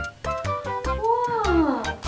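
Light background music with a pulsing bass beat; about a second in, a meow-like call rises briefly and then slides down in pitch over most of a second.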